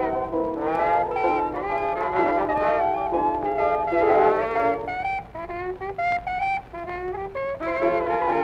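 Late-1920s jazz band recording: several horns play together, then about five seconds in a single horn takes a short broken solo phrase with bent notes, and the band comes back in near the end.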